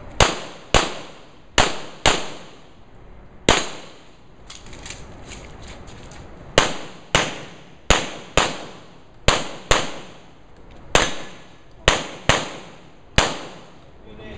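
Handgun shots during a practical pistol shooting stage: about sixteen shots, mostly in pairs about half a second apart, each with a short echo, with a pause of about three seconds after the fifth shot.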